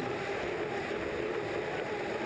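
Turbine-powered unlimited hydroplane running at racing speed, heard from its onboard camera: the engine holds a steady tone over a dense rush of wind and water.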